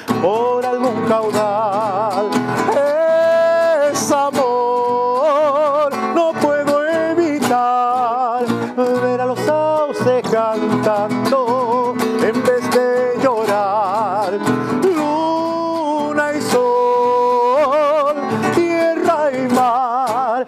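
A man singing a Spanish-language folk song with strong vibrato, accompanying himself by strumming a nylon-string classical guitar.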